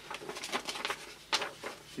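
A large paper envelope rustling and crackling as it is handled and rummaged in, with a run of small crinkles and one sharper crackle about a second and a half in.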